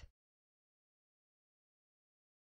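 Silence: the sound track goes blank just after the tail of a narrating voice dies away at the very start.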